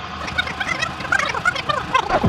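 Fast-forwarded audio: a rapid, high-pitched chattering of short wavering blips, the sped-up sound of the package being cut open and handled.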